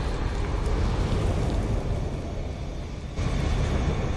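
Low rumbling sound effect of a fiery animated logo intro. It fades gradually, then swells again suddenly just after three seconds in.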